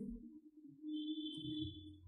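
Dry-erase marker squeaking on a whiteboard as a word is written: a thin, high, steady squeak starting a little under halfway in and lasting about a second, over a faint low hum.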